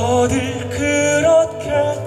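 Male tenor singing a slow ballad into a handheld microphone, holding notes with vibrato over an instrumental accompaniment with a steady bass note.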